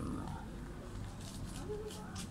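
A man's faint, low voice with a few short vocal sounds over a steady low hum.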